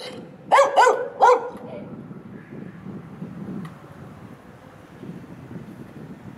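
A dog barking at another dog through a fence: three quick barks in the first second and a half, then it falls silent.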